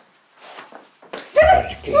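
Soft rustling of bedding, then about a second and a half in a woman's muffled cries, rising and falling in pitch, stifled by a hand clamped over her mouth.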